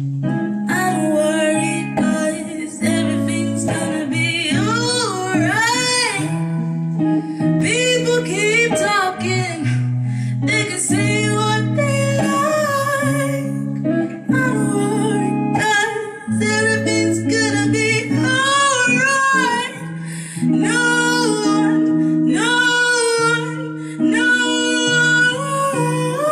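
A woman singing with melodic runs and held notes over electric guitars playing sustained chords, a live band in a small room.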